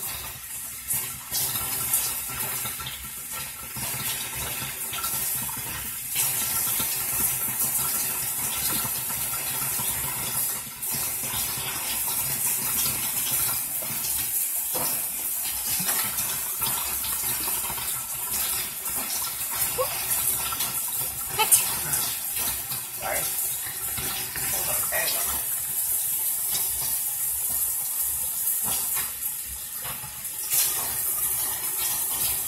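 A tap running steadily into a sink while a washcloth is wetted and used to rinse a facial scrub off a face.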